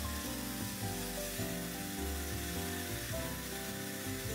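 Dyson Airwrap with its dryer attachment blowing air through wet hair: a steady, even hiss, under soft background music.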